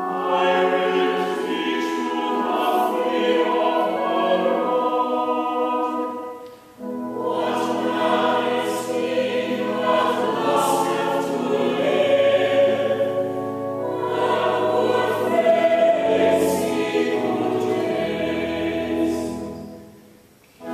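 Church choir singing a psalm to harmonized Anglican chant, with low sustained organ or bass notes beneath, verse by verse. There are brief breaks between verses, about seven seconds in and again near the end.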